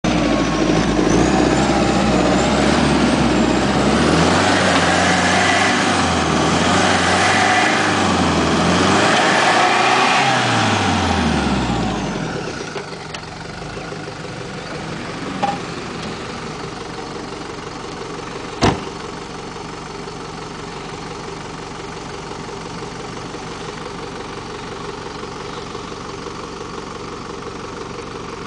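Land Rover Defender 110 engine revved hard and repeatedly, its pitch rising and falling for about twelve seconds as the vehicle tries to drive out of deep mud, with a heavy rushing noise over it. It then drops to a steady idle, with one sharp knock about two-thirds of the way through.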